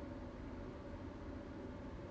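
Quiet room tone: a faint steady low hum with light hiss and no distinct sounds.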